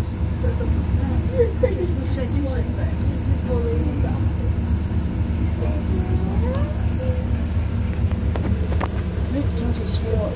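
Leyland Panther bus's rear-mounted diesel engine running steadily, heard from inside the saloon, with faint voices over it and a couple of brief knocks near the end.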